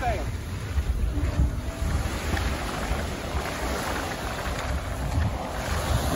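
Wind buffeting the microphone in gusts, over small waves washing onto a sandy shore.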